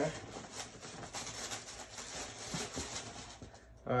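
Tissue paper rustling and crinkling as a sneaker is lifted out of its cardboard shoebox, a string of soft, irregular crackles that dies down shortly before the end.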